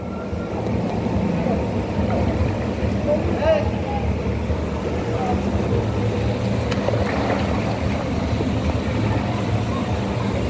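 Steady low mechanical hum over the noise of moving pool water, with faint voices now and then.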